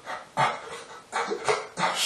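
A man weeping with joy: a few short, choked sobs and whimpering catches of breath, one after another.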